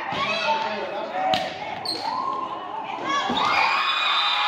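A volleyball being struck, two sharp hits about two seconds apart, in a large echoing gym, with players' voices around it.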